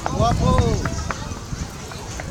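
A person's voice calling out, its pitch arching up and then down, loudest in the first second, over a low rumble.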